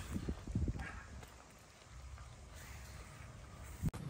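Five-week-old Malinois puppies eating soaked kibble from a pail: faint, quick smacking and chewing, busiest in the first second and then quieter.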